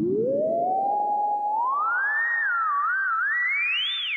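Bastl Instruments Cinnamon filter self-oscillating at full resonance: a clean, sine-like tone swept by hand on the frequency knob. It climbs from low to mid pitch, holds briefly, rises again, wobbles down and up, then glides high near the end.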